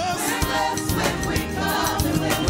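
Live gospel praise song: a praise team singing over a band with a steady beat, the congregation singing along.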